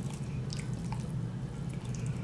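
Fingers tearing the meat of a rotisserie chicken apart: a few faint, short wet clicks over a steady low hum.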